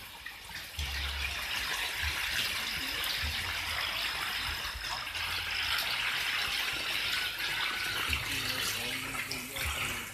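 Steady splashing and churning of water as a dense crowd of fish thrash in a shallow, nearly drained biofloc tank, with low wind buffeting on the microphone.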